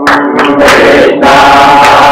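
A crowd of people chanting together in unison, loud and with long held notes.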